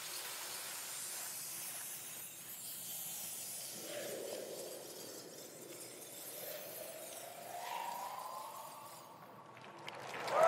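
A quiet, shimmering electronic sound effect for a hologram materialising: a sparkly hiss with faint sweeps, and a slow rising tone over the last few seconds.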